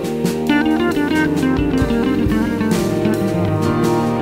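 Background music: guitar-led instrumental with a drum kit keeping a steady beat.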